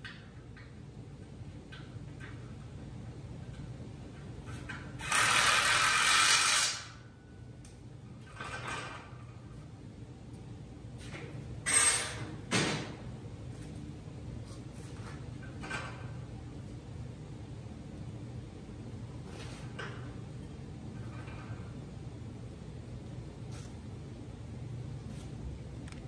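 A cordless drill/driver run in one burst of about two seconds, followed by a couple of sharp metal knocks, over a low steady shop hum.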